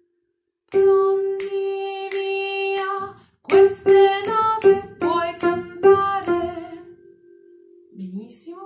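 A woman singing a phrase of a children's song: one long held note, a short break, then a run of shorter notes stepping up and back down that settles on a fading held note.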